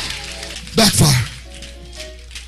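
A preacher's single loud, shouted word, distorted and clipped, about a second in. It sits over soft held music chords and a steady low hum.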